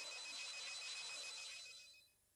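A faint electronic sound effect fading away: steady high tones over a hiss, dying out at about two seconds in as the scene fades to black.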